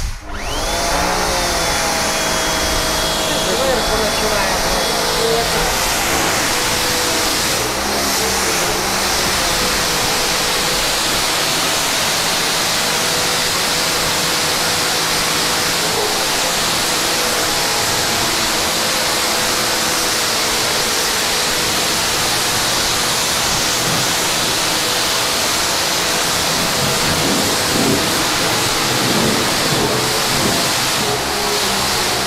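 STIHL pressure washer's motor and pump starting with a brief rising whine, then running steadily under the hiss of the high-pressure water jet. It is on its third, highest setting, where it runs short of water from the tank feeding it and cannot draw fast enough.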